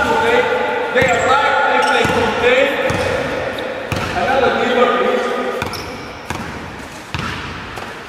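Basketballs bouncing on a hardwood gym floor in a large, echoing hall, a few separate bounces, the clearest in the last couple of seconds.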